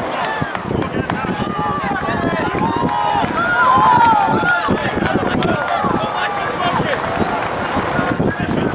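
Several people's voices talking and calling out at once, overlapping and unintelligible, outdoors at a soccer match.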